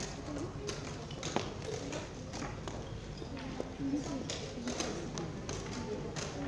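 Many voices chattering in a hall, with short sharp knocks of plastic chess pieces being set down and a chess clock being pressed during fast blitz play.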